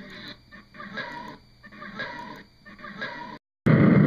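Short pitched cries, repeated about every half second on an old film soundtrack. They cut off about three and a half seconds in, and after a brief gap a much louder noisy burst begins near the end.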